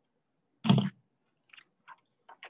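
Paper handled and flipped over: one short crinkling crunch of card paper a little past halfway through the first second, then a couple of faint rustles.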